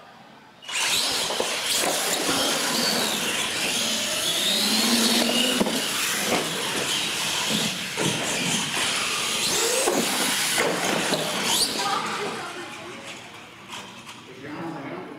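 R/C monster trucks launching and racing on a concrete floor: a sudden start about a second in, then motor whine with rising and falling pitch over tyre and chassis noise, which fades near the end.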